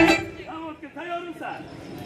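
Guitar music cuts off abruptly at the start, then a man's voice talks at a much lower level.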